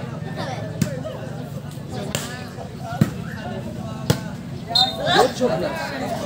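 A game ball struck hard three times, about 0.9, 3 and 4 seconds in, each a sharp knock, over crowd voices and shouts.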